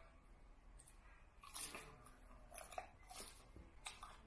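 Faint crunching of crisp raw lettuce being chewed, in a few short bursts starting about a second and a half in.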